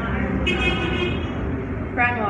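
A vehicle horn gives one short toot about half a second in, over a steady low rumble of traffic.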